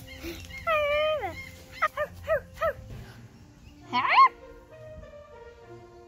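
Puppy yips and whimpers: a long falling whine about a second in, four short yips around the two-second mark, and a louder rising yelp about four seconds in. Soft background music plays underneath.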